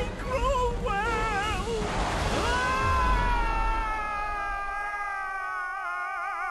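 Cartoon soundtrack over music: short wavering yells, then a rushing blast with a deep rumble about two seconds in, followed by one long high scream that sinks slowly as the characters fly through the air.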